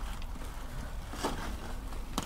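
Faint soft scraping and rustling of potting compost being scooped with a metal hand trowel into a plastic tub, with one brief louder scrape a little over a second in, over a low steady rumble.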